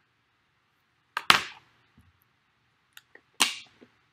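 Two sharp plastic pops about two seconds apart, with a few faint ticks between: a plastic water bottle being handled and opened.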